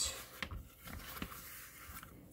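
Faint handling of a leather notebook cover as its flaps and pockets are opened and checked: light rubbing with a few soft taps.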